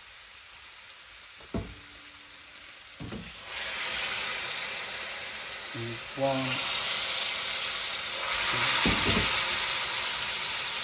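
Hot water from an electric kettle poured into a hot pan of curry masala with chicken and green beans, setting off sizzling and hissing that starts about three and a half seconds in and swells again near the end. Two knocks come first.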